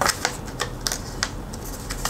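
A paper bill being handled, giving a run of irregular crisp clicks and rustles, about seven in two seconds.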